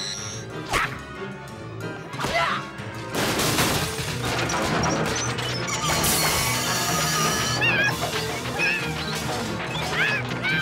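Cartoon crashing and mechanical clattering sound effects over background music; from about three seconds in the din turns dense and continuous.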